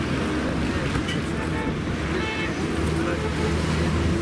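Busy street noise: road traffic with a steady low engine hum, and people's voices talking around.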